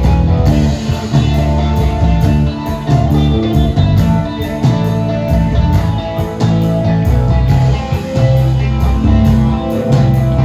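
Live glam rock band playing loud, with electric guitar over bass and a steady drum beat.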